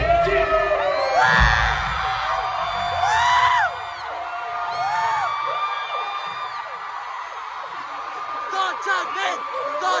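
Concert music with a heavy bass line, cutting off a few seconds in, while an arena crowd cheers and screams; high whoops and shrieks rise and fall throughout.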